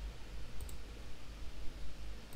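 Two quick, faint computer mouse clicks about half a second in, over a low steady hum of room noise.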